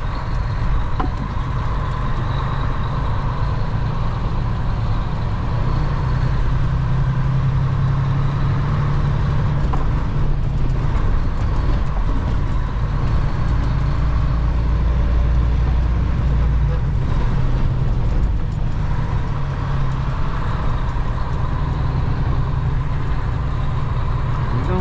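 Western Star semi truck's diesel engine pulling hard with a trailer on behind, heard from inside the cab as a steady low drone. It builds to its loudest a little past the middle.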